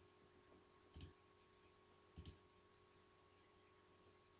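Computer mouse button clicking twice, faintly, about a second and about two seconds in, over a low steady electrical hum.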